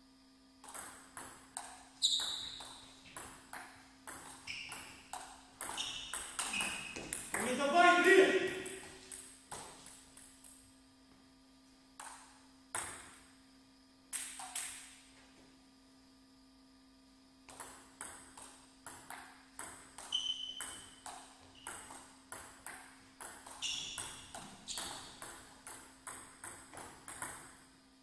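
Celluloid-type plastic table tennis ball struck by bats and bouncing on the table in two fast rallies, heard as quick runs of sharp ticks, with a few single bounces in the lull between them. A loud shout rises over the first rally about eight seconds in.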